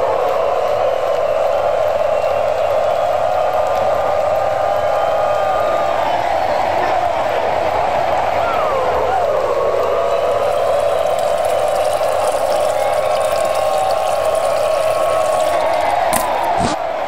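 A steady stream of urine splashing into a porcelain urinal bowl, unbroken and with a pitch that wavers, dipping and rising once around the middle.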